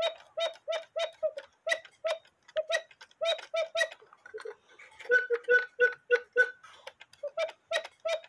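Mechanical cuckoo clock movement ticking quickly, about three to four ticks a second, each tick with a short pitched ring. For a couple of seconds in the middle the ticks sound at a lower pitch, then go back to the first pitch.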